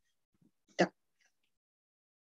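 A person clearing their throat once, briefly, about a second in, heard through a video call.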